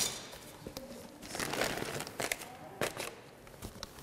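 Scattered crinkling and rustling of a paper sack of plaster and the plastic sheeting under it as gloved hands handle them, with a few short taps.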